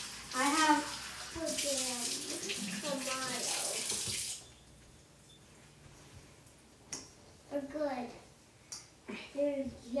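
Water running from a kitchen tap, shut off suddenly about four seconds in. A few light clicks follow.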